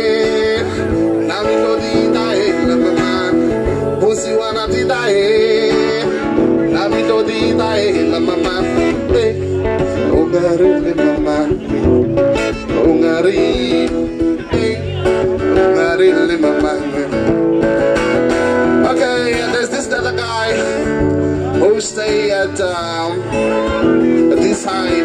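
Acoustic guitar played live, with a man singing along at times.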